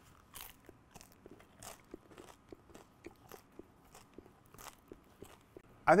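A bite taken from a crisp-crusted gluten-free baguette, then chewing: a crunch as the crust breaks about half a second in, followed by a run of faint, irregular crunches as it is chewed.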